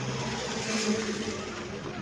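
A motor vehicle's engine running close by, over steady outdoor noise, swelling briefly about a second in.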